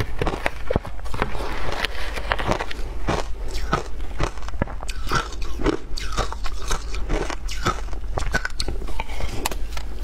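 Close-miked eating of shaved ice: a steady run of crisp crunches and bites several times a second as the frozen ice is chewed, with a metal spoon scraping and clinking in a plastic tub.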